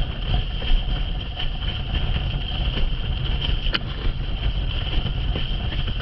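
Wind buffeting the microphone of a camera mounted on a moving windsurf rig, a heavy steady rumble, mixed with the rush and splash of a windsurf board planing over choppy sea. A few sharp ticks, the clearest about midway, from the rig or board.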